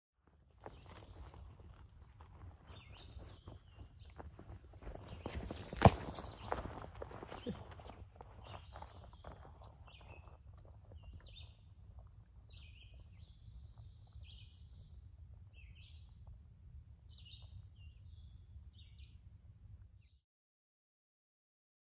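Footsteps on dry leaf litter and sticks, with one sharp loud crack about six seconds in, growing fainter after about eight seconds as the walker moves away. Small birds chirp throughout over a steady low rumble.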